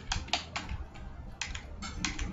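Computer keyboard keys typed in a few quick strokes, one short group near the start and another about a second and a half in.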